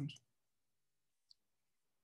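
Near silence with a single faint click a little over a second in: a computer mouse clicked to advance a presentation slide.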